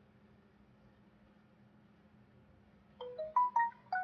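Quiet room tone, then about three seconds in a short electronic jingle of five or six quick notes that rise and then fall in pitch, like a phone's ringtone or alert tone.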